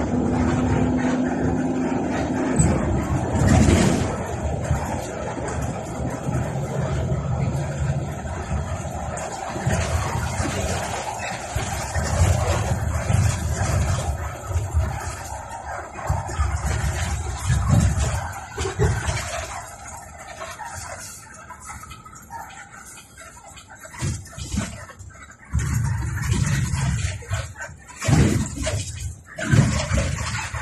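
Passenger bus under way, heard from the driver's seat: engine and road rumble rising and falling, with a steady pitched tone in the first couple of seconds and again briefly later.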